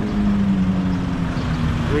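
A motor vehicle engine running close by: a steady low hum that sinks slightly in pitch and fades out near the end, over constant street traffic rumble.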